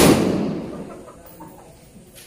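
A single gunshot: one sharp, loud report at the start that echoes and dies away over about a second.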